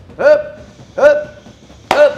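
Two short shouted calls about three quarters of a second apart, then a single sharp smack of a boxing glove punching a heavy bag near the end.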